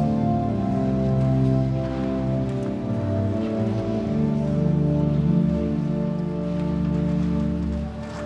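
Church organ playing slow, sustained chords, each held for a second or more before it changes.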